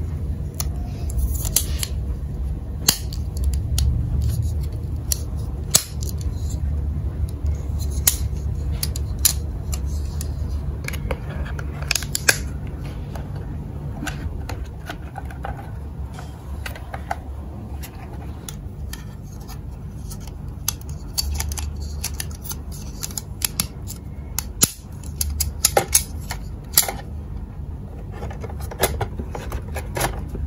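Small hard-plastic toy parts handled and pressed together, a window grille fitted into its frame and set onto the shop's walls, giving irregular clicks and taps over a low steady hum.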